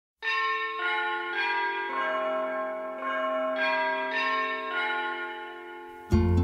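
Bells struck one after another at about two strikes a second, each note ringing on and overlapping the next as they change pitch, then dying away near the end.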